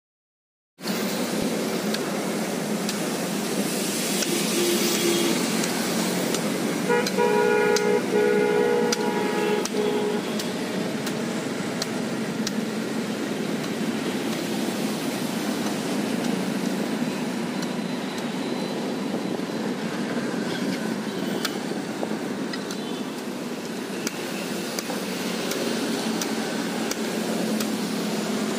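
Steady roadside traffic noise, with a vehicle horn sounding for about three seconds starting some seven seconds in. Scattered sharp knocks come from a heavy knife chopping into toddy palm fruit husks.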